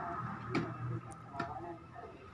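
Coins clinking as they are pushed through the slot of a plastic coin bank and drop inside: a few short sharp clicks, two of them louder, about half a second and a second and a half in.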